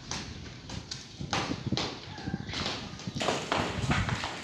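Irregular knocks and clattering from demolition work on a roof and walls, several impacts a second in uneven bursts, busiest in the last second.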